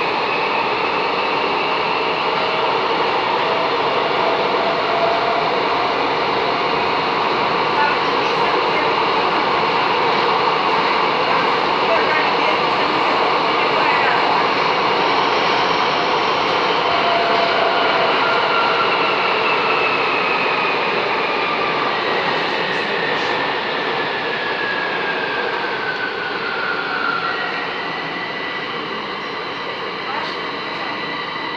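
Bucharest Metro M5 train running through a tunnel, heard from inside the carriage: a loud, steady rush with thin whining tones from the motors and wheels. Late on a whine falls in pitch as the train slows into a station.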